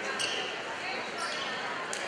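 Babble of spectators' voices echoing in a gymnasium, with sharp smacks of a volleyball, one just after the start and one near the end.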